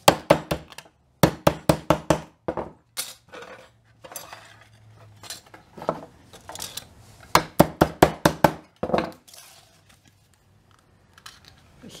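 Runs of sharp metallic taps and clinks as a stiff metal-wire plant-label stake is tapped straight against a wooden workbench. The taps come in quick bursts of several strokes, with short pauses between them.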